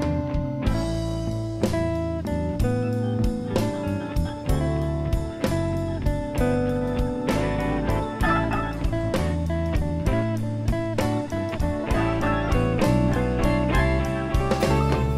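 Instrumental stretch of a blues-rock recording led by electric guitar, with a second electric guitar, a humbucker-equipped Kiesel California Singlecut plugged straight into the mixer with no amp, playing lead lines along with it. Single picked notes come in a steady run over a bass line.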